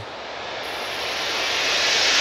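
Horror-film sound-design riser: a rushing noise swelling steadily louder, like a jet approaching.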